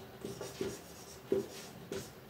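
Marker pen writing on a whiteboard: a handful of short separate strokes as letters are written.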